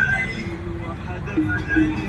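A song with a singer's voice playing on a car radio, heard inside the cabin of a car moving in heavy traffic, over a low rumble of engine and road noise.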